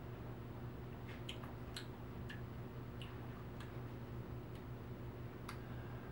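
Quiet room tone with a steady low electrical hum, broken by about eight faint small clicks scattered through it: lip and mouth sounds from sipping and tasting a beer.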